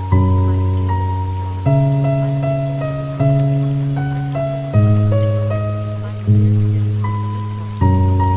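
Slow, soft background music: sustained low chords that change about every second and a half, with a simple line of higher notes on top, over a steady hiss of rain.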